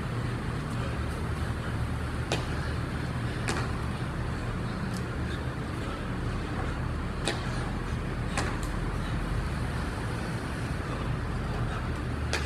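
Steady low hum of machinery or distant traffic, with a few sharp taps from hands and feet landing on a concrete floor during burpees. The taps come in pairs about five seconds apart.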